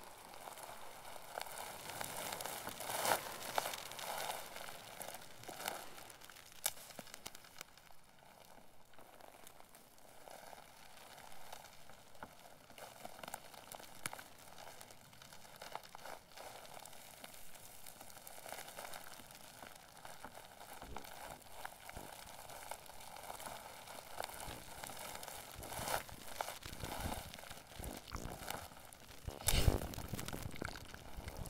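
Experimental electronic music played live from a pad controller: sparse crackling, rustling noise textures with scattered clicks. It is louder about three seconds in and swells again with a deeper burst near the end.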